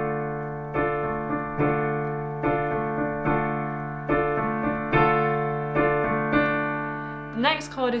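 Piano playing a D minor chord: the left hand holds the low fifth D and A while the right hand's D, F, A chord is struck again and again in an even rhythm, about once every 0.8 seconds. A voice starts speaking near the end.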